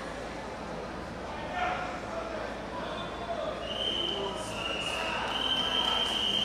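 Indistinct voices murmuring in a large hall, with a steady high-pitched tone setting in a little past halfway.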